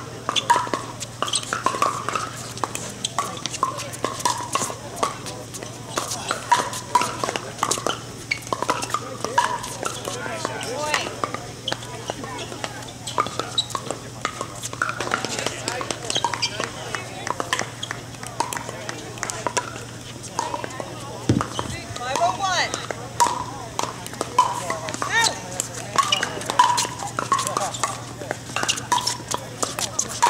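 Pickleball paddles striking the plastic ball, with repeated sharp pops from this and neighbouring courts, over a steady background of voices and a low steady hum.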